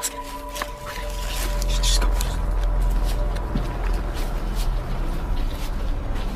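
Low, steady rumble of a handheld camera's microphone being jostled as it is carried in the dark, with scattered knocks and rustles of handling and movement.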